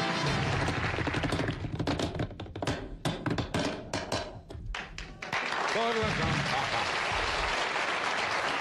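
Studio band music returning from the break, then a flurry of sharp drumstick-like taps and hits at irregular spacing from about two to five seconds in.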